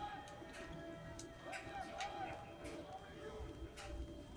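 Hushed basketball arena during a free throw: a faint murmur of crowd voices with a few soft knocks.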